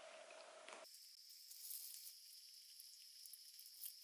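Near silence: faint room tone that changes abruptly about a second in to a thin, steady high-pitched tone, with a few faint ticks.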